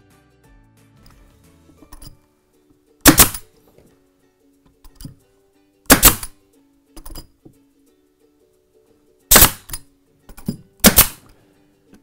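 Pneumatic nail gun firing nails down through hardwood slats into a timber frame: four loud, sharp shots, the last two about a second and a half apart, with a few softer knocks between them.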